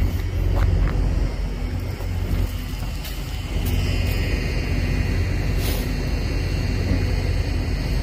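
Steady low rumble of an idling vehicle, with a few faint clicks.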